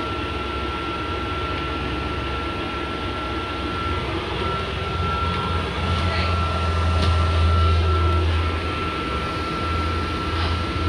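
Inside a London double-decker bus on the move: a steady low engine drone that swells for a few seconds about halfway through, with a thin constant high whine above it.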